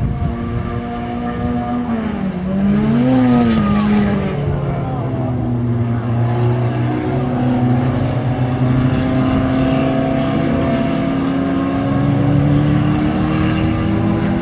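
Citroën 3CV race car engines running. One note swoops down, then up and down again, about two to four seconds in, and after that a steady note climbs slowly.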